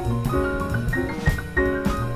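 Small jazz group with piano, double bass and drum kit playing, a lead line of quick, short notes running over the rhythm section.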